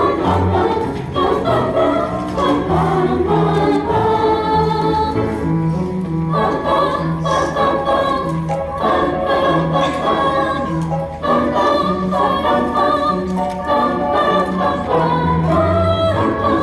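School choir of mixed boys' and girls' voices singing in harmony, with steady low notes from piano accompaniment underneath.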